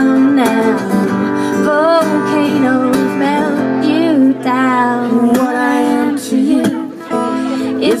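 Live acoustic guitar strumming under a singer's held, wavering sung notes.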